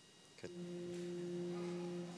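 An organ begins playing about half a second in, holding one steady note.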